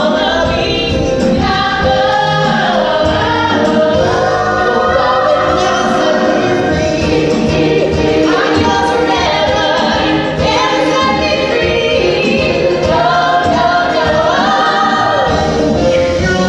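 A woman and a man singing a musical-theatre duet together over orchestra accompaniment, recorded live in a theatre.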